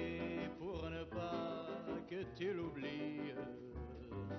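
A man singing a slow French love song, his voice wavering on held notes, accompanied by piano.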